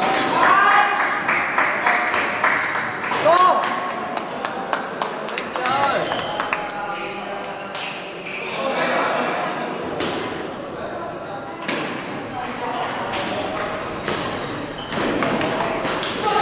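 Table tennis balls clicking off bats and tables, many short sharp hits from several games at once, mixed with people's voices.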